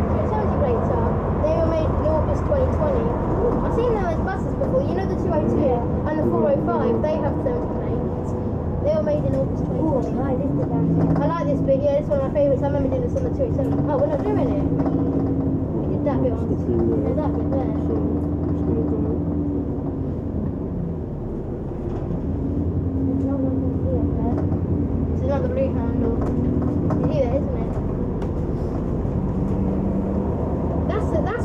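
Engine drone and road noise inside a moving double-decker bus, with passengers' voices talking indistinctly throughout, the whole soundtrack pitched down. The engine sound dips briefly about twenty seconds in and then picks up again.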